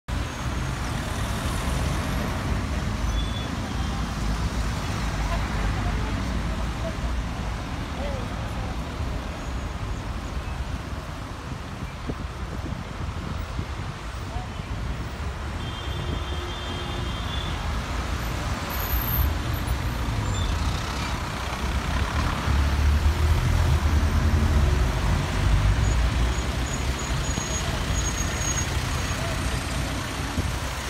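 Busy city street traffic: car and truck engines and tyres passing, with indistinct voices of passers-by. It grows louder for a few seconds after about twenty seconds in, as vehicles pass close.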